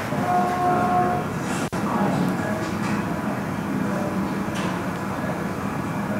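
Steady hum and rumble of operating-room equipment, played back from a video over the lecture-hall speakers. A steady tone is held through most of the first second, and the sound cuts out for an instant a little before two seconds in.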